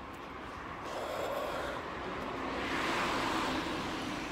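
A car passing on the road: its tyre and engine noise swells about a second in, peaks near three seconds and fades slightly toward the end.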